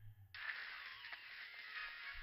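Faint background audio from the anime episode's soundtrack, low in the mix. It comes in about a third of a second in after a brief near silence.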